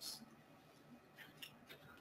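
Near silence: room tone in a pause, with a faint tick at the start and a couple of tiny ticks about a second and a half in.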